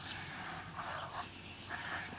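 German Shepherd dog making short noises as it bites and snaps at a lawn sprinkler's water spray, in two bursts about a second in and near the end, over the steady hiss of the spraying water.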